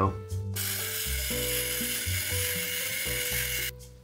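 Background music with sustained low notes, overlaid from about half a second in until shortly before the end by a steady hiss that starts and stops abruptly.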